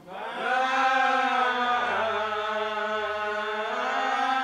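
Voices in a church singing a slow, chant-like hymn in long held notes. The singing swells in just after the start.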